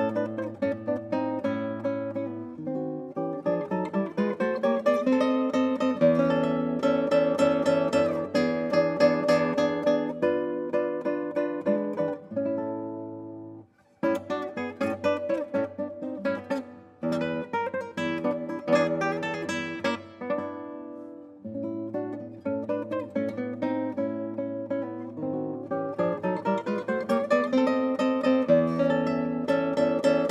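Solo classical guitar with nylon strings, played fingerstyle: a plucked melody over sustained bass notes. Just under halfway through, the playing stops for a moment, then resumes.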